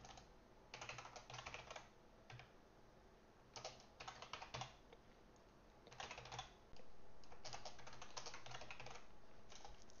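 Computer keyboard typing, faint, in about six short bursts of keystrokes with pauses between them.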